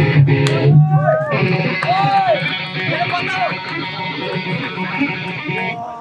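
Electric guitar through the band's amplifier, playing a distorted sustained wash with a few notes that rise and fall in pitch, cutting off shortly before the end. A man's voice on the PA is heard briefly at the start.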